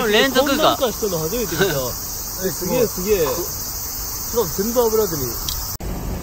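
Steady high-pitched chirring of a night insect chorus in woodland, with people's voices heard at intervals over it; the sound breaks off briefly near the end.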